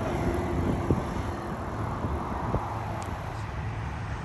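Outdoor road noise: a steady low rumble and hiss of wind and passing traffic, with a couple of faint clicks.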